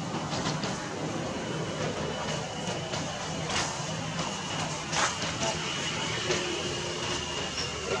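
Steady outdoor background noise: a constant low rumble with a thin, steady high-pitched tone over it, and a few sharp clicks around the middle.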